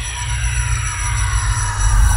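Synthesized intro sound effect: a low rumbling drone under a cluster of tones gliding slowly downward in pitch, growing gradually louder.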